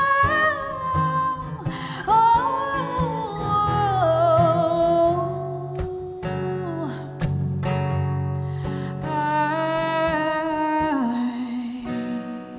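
A woman singing long held notes, one wavering in the middle, over her own strummed acoustic guitar, live.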